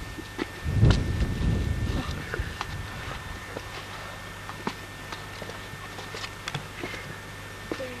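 Footsteps on sand and rock, heard as irregular light clicks and knocks, with a brief low rumble of wind or handling on the camcorder microphone about a second in. A faint steady hum from the recording runs underneath.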